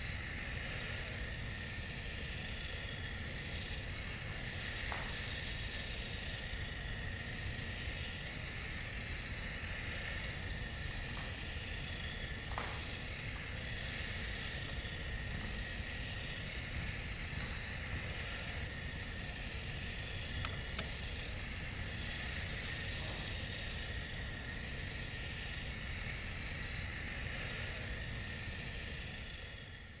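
Small robot's motor whirring steadily at one pitch over a low rumble, with a few faint ticks, fading out at the very end.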